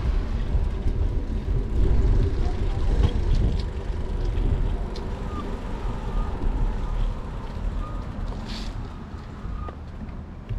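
Wind rumbling on the action camera's microphone while riding a bicycle over asphalt, easing off over the last few seconds.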